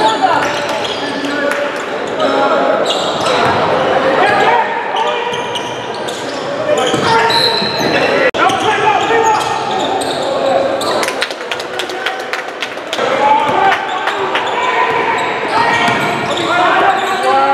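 Basketball game sounds in a large gym: many voices talking over each other, with a basketball bouncing on the court floor. A run of sharp knocks comes about eleven to thirteen seconds in.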